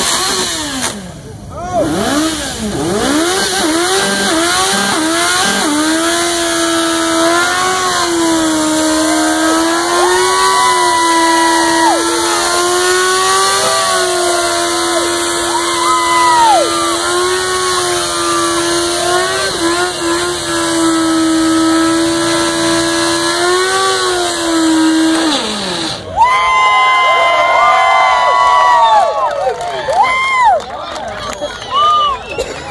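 Yamaha FZ1 inline-four engine in a burnout: revved up hard, then held at high revs for about twenty seconds with small dips while the rear tyre spins against the pad. About four seconds before the end the revs drop away.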